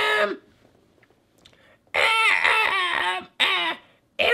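A man's high-pitched put-on voice, with no clear words: a short burst at the start, then near silence, then two more stretches from about halfway through.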